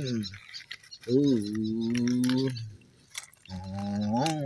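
A man's voice holding a long drawn-out "ooh" for about a second and a half, with another starting near the end. Light clicks of the plastic toy trucks being moved over gravel can be heard.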